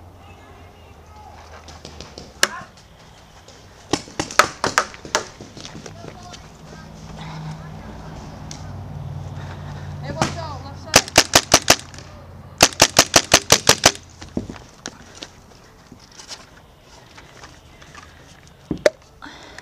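Paintball marker firing at close range: a single shot, then a quick string of about six shots, then two fast volleys of about six and nine shots a second apart.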